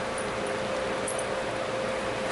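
Steady room noise in a meeting room: an even hiss with a thin steady hum, no one speaking.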